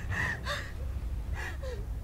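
A woman gasping and panting in pain: a few ragged breaths with short whimpering cries between them, over a low steady rumble.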